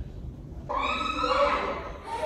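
A person's high-pitched, drawn-out cry, lasting a little over a second and starting just under a second in.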